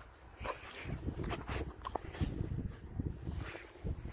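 Soft, scattered rustles and thumps of footsteps on grass as a person and a young puppy walk across a lawn, with a few brief clicks.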